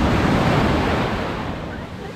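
Sea surf: a wave breaking at the water's edge and washing up the sand close by, loud at first and fading over the last second as it runs out.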